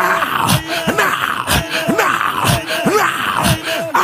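A man's voice making short, wordless vocal sounds without clear words, each a brief falling cry, repeated about twice a second.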